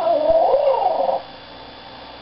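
A man's voice making a squawky parrot-like call: one drawn-out cry of about a second that wavers up and down in pitch, then stops.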